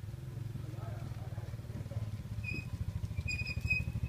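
A small engine running nearby with a fast, even pulse, growing gradually louder, with faint voices behind it and a thin high tone coming in about halfway through.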